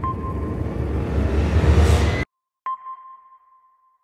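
Logo sting sound effect: a low, rushing whoosh that builds and cuts off suddenly a little over two seconds in, then a single sharp ping that rings out and fades.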